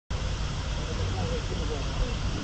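Steady outdoor background noise with a low rumble, and faint voices of people talking.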